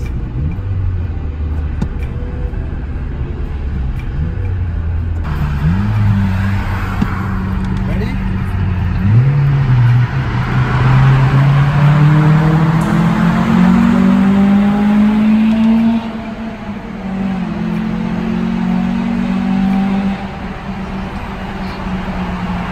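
Car engine and road noise heard from inside the cabin as the car accelerates on a highway. The engine note climbs in pitch and steps through several gear changes. The road noise swells in the middle while the car runs through a tunnel.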